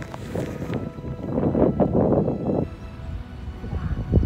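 Wind buffeting the phone's microphone: a low, gusty rumble that swells to its loudest in the middle and eases off again, with faint background music underneath.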